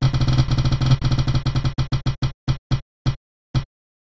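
Spinning prize-wheel sound effect: rapid ticking that slows as the wheel winds down, the ticks spreading out to about two a second near the end.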